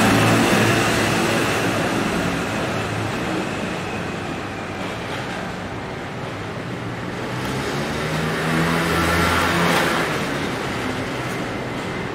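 Road traffic: cars passing close by, loudest near the start and again about nine to ten seconds in.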